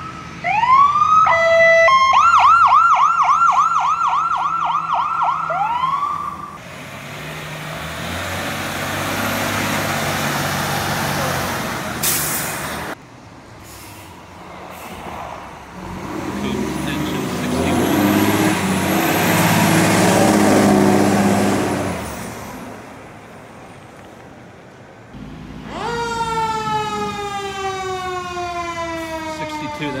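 Fire engine sirens and truck engines going by. It opens with an electronic siren yelping rapidly, about three swoops a second. A heavy truck engine passes, loudest about two-thirds of the way through. Near the end another siren sounds, its pitch slowly falling.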